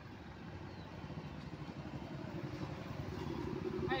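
Road traffic: a motor vehicle's engine, growing steadily louder as it approaches.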